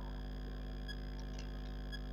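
A pause in speech filled by a steady electrical hum with several faint, level high-pitched tones, and a few faint short blips around the middle.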